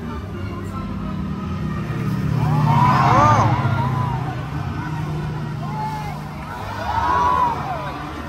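A jet ski engine running steadily as the craft races across the water, swelling loudest about three seconds in as it passes. Voices shout over it about three seconds in and again near the end.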